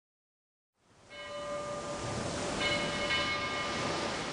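Intro soundscape fading in about a second in: a steady rushing noise bed with sustained, bell-like chime tones that come in three times, each held for about a second.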